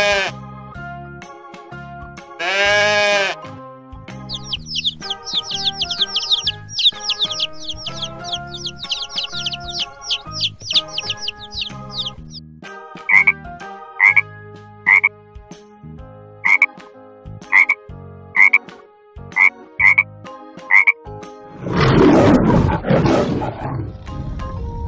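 A sequence of animal sounds over children's background music. First a goat bleats once, about three seconds in, then chicks peep rapidly for about eight seconds, followed by about nine short separate calls roughly a second apart. Near the end a lion roars.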